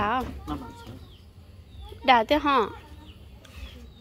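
Chickens clucking faintly in the background, with short spoken words at the start and again about two seconds in.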